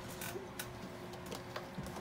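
A few faint clicks and knocks of a plastic jar with a snap-on lid being lifted down from a wire pantry shelf and handled, over a steady faint hum.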